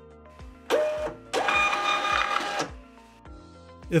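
Arkscan 2054A direct thermal label printer printing a 4x6 shipping label: a short feed whir about a second in, then just over a second of steady motor whirring with a whine as the label is printed and fed out.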